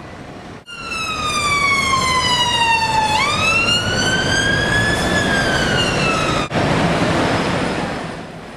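Ambulance car siren wailing in slow glides: one long falling sweep, a rise to a peak, then a slow fall, cut off suddenly about two-thirds of the way through. After that there is a steady hiss of street noise.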